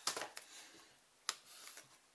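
Crinkling of a sealed plastic packet, a Celox-A applicator, being handled at the start, then a single sharp click about a second and a quarter in and faint rustling.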